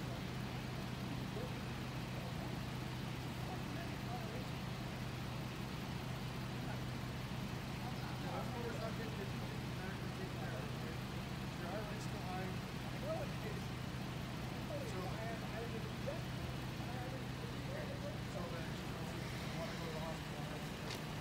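Steady low hum of an idling vehicle engine, with faint, indistinct conversation from a group of people standing close by.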